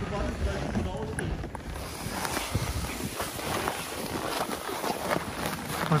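Wind buffeting the microphone as an uneven low rumble, with indistinct voices of people in the background.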